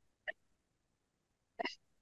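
Two brief mouth sounds from a speaker pausing between words, a short click about a third of a second in and a slightly longer breathy one about a second and a half in, with dead silence between them from the call's noise-gated microphone.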